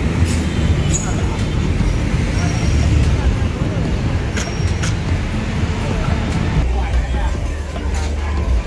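Loud street ambience: traffic noise with a heavy low rumble and people's voices, with a few sharp clicks.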